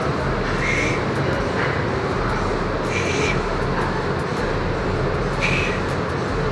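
Steady rushing noise of gym ventilation with a low hum under it, broken by three short hisses about every two and a half seconds.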